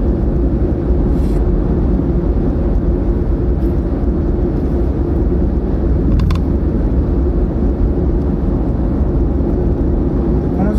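Steady road and engine rumble heard from inside a car's cabin while it is driven along an expressway.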